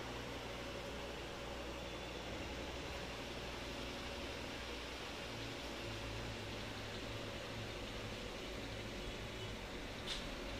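Steady background hiss with a low hum and a faint steady tone underneath, with no distinct events: room tone.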